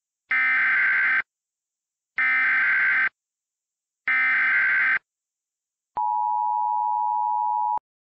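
Emergency Alert System (EAS) SAME header encoding a tornado warning: three harsh digital data bursts, each about a second long and about a second apart, followed by the steady two-tone EAS attention signal held for just under two seconds and cut off abruptly.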